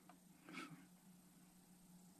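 Near silence: room tone with a faint steady low hum and one faint, brief soft sound about half a second in.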